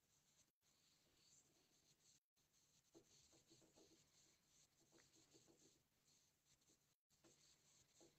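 Near silence: faint room tone with a few very faint ticks.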